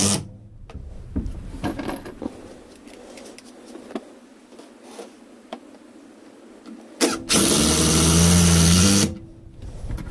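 Cordless impact driver running a screw into the wooden ladder frame in one burst of about two seconds, starting about seven seconds in, its motor pitch rising as it spins up. A few light knocks and clicks of handling come before it.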